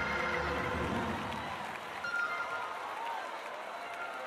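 Church music with a low bass fades out over the first second and a half, and a large congregation keeps applauding and cheering.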